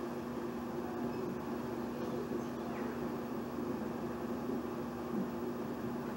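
Steady low hum and hiss of room noise, with a few faint clicks and rustles as a VHS tape and its case are handled.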